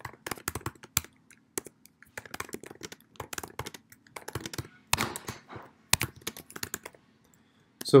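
Typing on a computer keyboard: irregular runs of quick key clicks, pausing briefly near the end.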